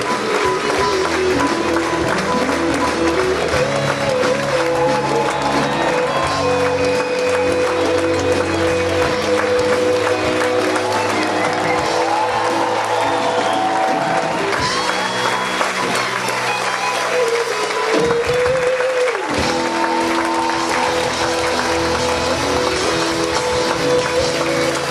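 Symphony orchestra playing curtain-call music in long, sustained notes over continuous clapping applause.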